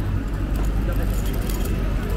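Busy city street: passers-by talking over a steady low rumble of road traffic, with scattered clicks of footsteps on the pavement.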